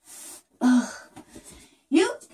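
A woman's quick, breathy exhale, then a short voiced groan of effort as she struggles to stretch a fitted sheet over a mattress. A few faint light clicks follow.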